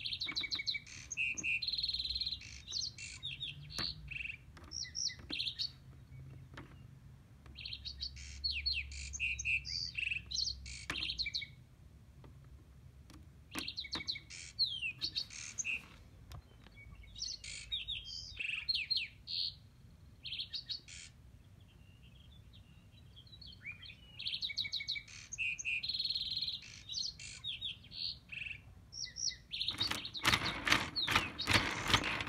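Springtime songbirds chirping and singing in bouts of several seconds, with quieter gaps between the bouts.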